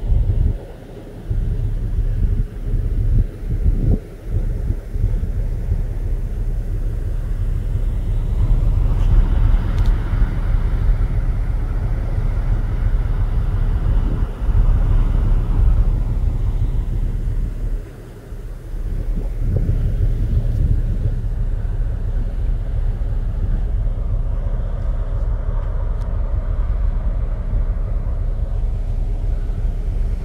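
Wind buffeting the microphone on a moving ferry's open deck: a loud, uneven low rumble that drops away briefly about a second in, again near four seconds and near eighteen seconds.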